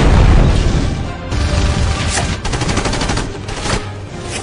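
Movie battle sound mix: a loud boom at the start, then rapid automatic gunfire from about two seconds in, over music.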